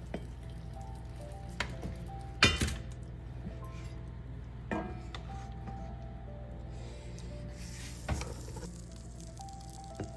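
Soft background music with a few clinks of a ladle knocking against the pot and the stainless steel food jars as broth is ladled out, the loudest clink about two and a half seconds in.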